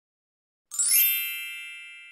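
A single bright electronic chime (ding) sound effect sounds about two-thirds of a second in. It rings with several high tones together and fades slowly.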